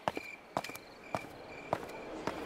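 Footsteps walking at an even pace, a little under two steps a second, with crickets chirping steadily in the background that fade out shortly before the end.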